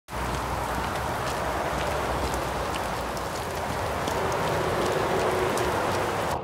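Heavy rain falling on wet pavement: a steady hiss with scattered ticks of individual drops.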